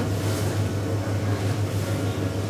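A steady low droning hum, like machinery running, with a slight regular waver in level.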